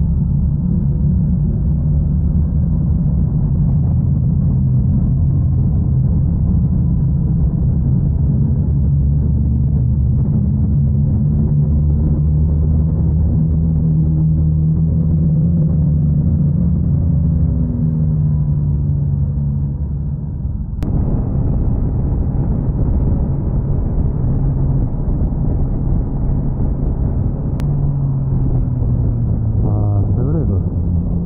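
BMW S1000XR's inline-four engine running as the motorcycle rides along, its pitch rising and falling with the throttle, over steady wind and road noise. About two-thirds of the way through, the sound changes abruptly and turns noisier.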